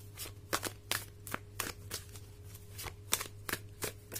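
A deck of tarot cards shuffled by hand, the cards slapping and flicking against each other in short, irregular clicks, about three or four a second.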